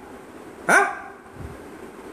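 A man's single short exclamation, 'haan', a brief call that rises and falls in pitch, then low room noise.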